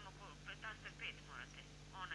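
Faint speech from the far end of a telephone call, thin as heard down the phone line, over a low steady hum.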